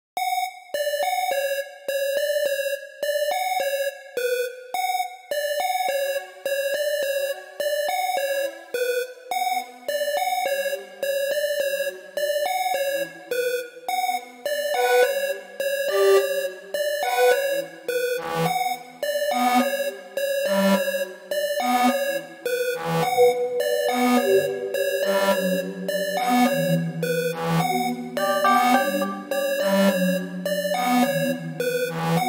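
Synthesizer melody for a trap beat, played by the Nexus plugin from a piano roll, looping a short phrase of evenly spaced notes. About ten seconds in, lower notes join. From about fifteen seconds the loop grows fuller, with long low notes near the end.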